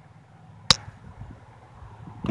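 A single sharp click about two-thirds of a second in, over a faint low rumble.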